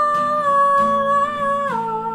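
A woman singing one long held note over strummed acoustic guitar, the note stepping down to a lower pitch shortly before the end.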